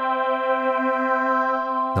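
Arturia Farfisa V software combo organ playing its Mellow Strings preset: one held note, bright with many overtones and a slight wobble, that stops near the end.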